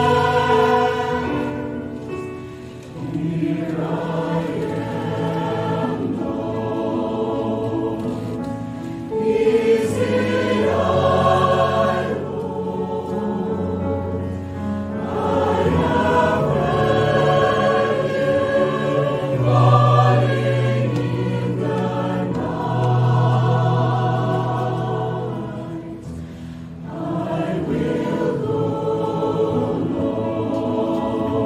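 Mixed choir of men's and women's voices singing a sacred choral piece in long held phrases, with brief breaks between phrases about three seconds in and again near the end.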